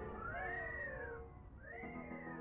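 Two drawn-out pitched cries, each rising and then falling over about a second, over a faint music bed that fades out and then comes back near the end.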